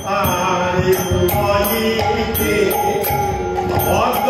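Bengali padabali kirtan: a man singing a devotional melody over a harmonium's sustained reed chords, with a khol drum and hand cymbals keeping a steady beat.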